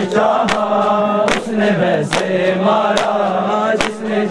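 Men chanting a noha, a Shia mourning lament in Urdu and Punjabi, led through a microphone. Over the chant, sharp unison chest-beating (matam) slaps fall in a steady beat, about one every 0.8 seconds.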